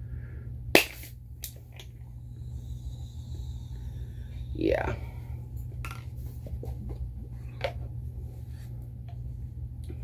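Marble-sealed glass soda bottle (Ramune-style peach soda) opened with a single sharp pop about a second in as the glass marble is pushed into the neck, followed by a faint fizz. Near the middle there is a brief hum of a voice, then small clinks as she drinks from the bottle, over a steady low hum.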